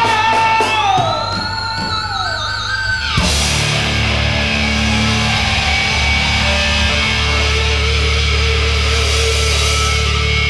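Live rock band with loud electric guitars. A held guitar note gives way to a rising, wavering lead line about a second in. That line cuts off suddenly a little after three seconds, and the full band with drums and bass comes in heavily.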